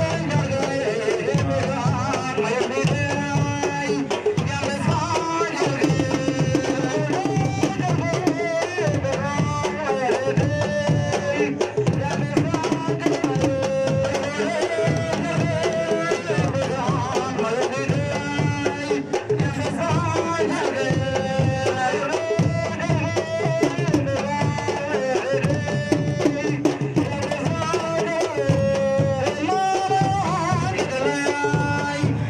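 A woman singing into a microphone in long, held, wavering notes over steady drumming.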